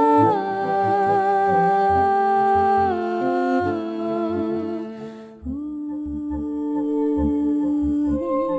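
Hummed vocal music: voices hold long notes that step down in pitch every second or two, with a new lower held note coming in about five seconds in, over a soft low pulse.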